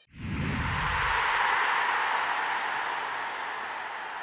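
Logo-transition sound effect: a sudden low boom that dies away within about a second, under a loud hissing whoosh that swells in and slowly fades.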